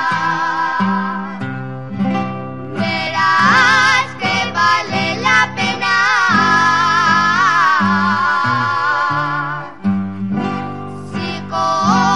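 A Navarrese jota sung with a wavering vibrato in long held phrases, accompanied by guitars and accordion.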